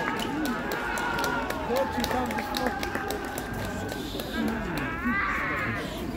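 Players' shouts carrying across a football pitch, with a quick run of close sharp steps or clicks through the first few seconds.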